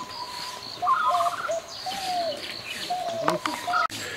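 Birds chirping and singing outdoors: a run of short whistled notes and a brief trill, repeating every half second or so.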